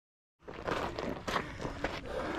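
Dead silence for the first half second, then a runner's footsteps on a dirt trail, a steady series of short steps over a background hiss.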